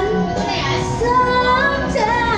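A young woman's voice singing into a microphone, holding and sliding between sustained notes over an instrumental backing track.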